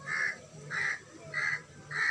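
A crow cawing: four short, evenly spaced caws about two-thirds of a second apart.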